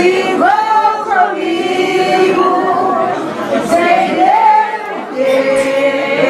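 A group of people singing together in long held notes that slide between pitches.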